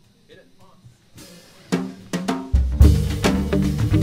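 Jazz band starting a bossa nova: a few drum and horn hits about halfway through, then the full band with bass and drum kit comes in loudly.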